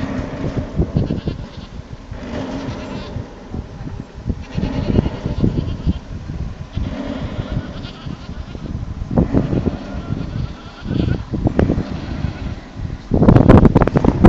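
Animal calls at irregular intervals, some with a quavering, bleat-like pitch. About a second before the end, a loud gust of wind hits the microphone.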